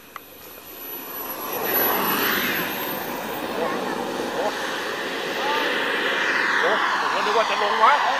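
Radio-controlled model airplane flying a fast low pass: its motor noise swells about a second and a half in and stays loud, with a thin high whine rising in pitch as it goes by.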